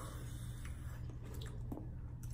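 Faint, wet mouth sounds of chewing spicy instant noodles, with a few soft clicks, over a low steady hum.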